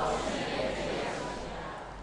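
A pause between a man's spoken phrases, filled with a steady hiss of background noise that slowly fades.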